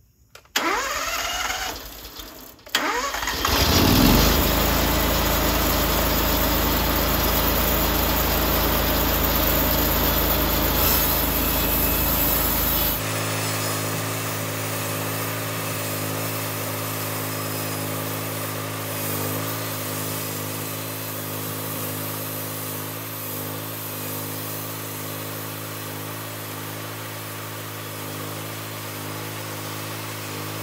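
Mister Sawmill Model 26 bandsaw mill's engine being cranked and started: a brief burst of cranking, then the engine catches a little under three seconds in and revs up to a steady run. From about thirteen seconds in, the engine runs on steadily at a lower level while the mill head is pushed along a hard red oak log for the cut.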